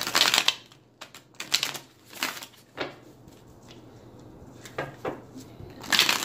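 A deck of tarot cards being shuffled by hand, in several short bursts of card-on-card clatter with a quieter pause in the middle.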